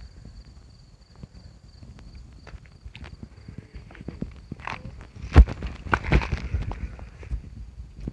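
Footsteps and rustling through grass, with irregular knocks and one sharp knock about five and a half seconds in. Crickets chirp steadily in the first half.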